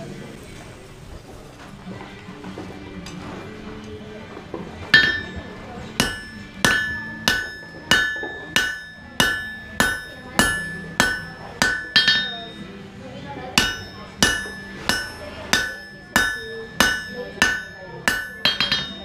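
Hand hammer forging a red-hot 1080 carbon steel knife blank on an anvil: sharp blows about two a second with a ringing metallic note, starting about five seconds in, with a short pause partway through.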